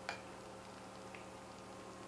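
A fork clicks once against a plate just after the start, with a fainter tick about a second in, over a quiet room with a steady low hum.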